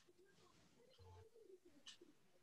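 Near silence: faint room tone over a video call, with a faint low wavering sound through the open microphones.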